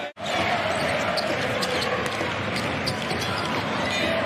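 Basketball being dribbled on a hardwood arena court, with short sharp strikes over the steady noise of the crowd and voices in the hall; the sound drops out for a moment just at the start.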